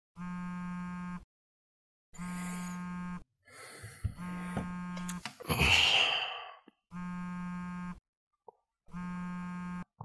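Harsh electronic buzzer sounding in one-second blasts about every two seconds, five times. A loud hissing rush sits over the third buzz, about halfway through.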